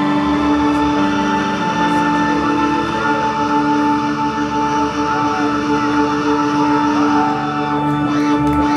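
A live rock band's amplified guitars and bass holding a loud, steady drone of sustained tones, the notes ringing on without a clear beat.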